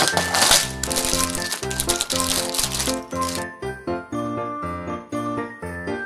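Small LEGO pieces rattling and plastic packaging crinkling for about the first three and a half seconds as the minifigure parts are taken out of the advent calendar compartment, over background music with a steady beat.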